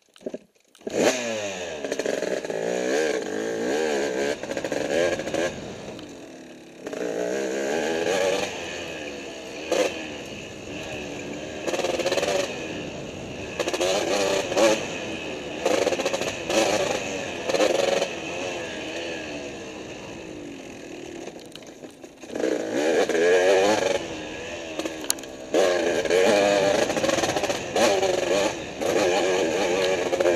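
Dirt bike engine running under way, coming in about a second in and revving up and down with the throttle. It eases off twice, then runs harder near the end. A few sharp knocks are heard over the bumps.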